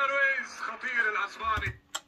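Speech: a man's voice talking at a lower level than the close voice around it, as from a television football match commentary.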